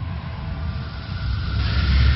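Cinematic intro sound effect: a deep rumble, with a rushing noise swelling up and growing louder about one and a half seconds in.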